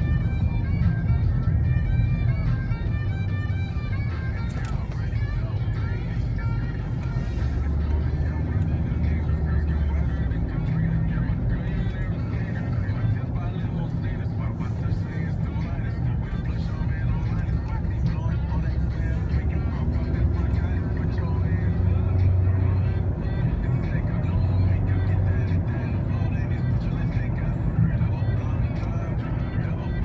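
Steady low rumble of a car driving, heard from inside the cabin, with music and a voice playing over it. The music is clearest in the first few seconds.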